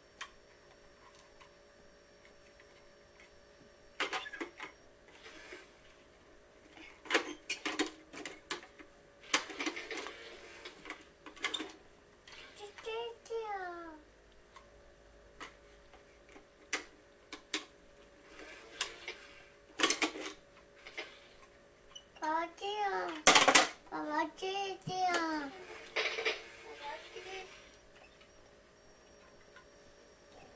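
A toddler's sing-song vocalising in two short stretches, with scattered clicks and knocks from a plastic toy cash register being played with. A sharp knock a little after the second stretch begins is the loudest sound.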